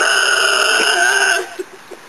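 A child's loud yell, held at one pitch for about a second and a half and then cut off, with a couple of short faint sounds after it.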